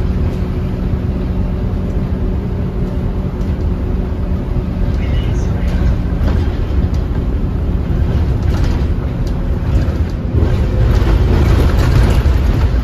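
Diesel bus engine and road noise heard from inside the passenger saloon of a moving bus: a steady low drone with an engine hum that fades about halfway, and the rumble growing a little louder near the end.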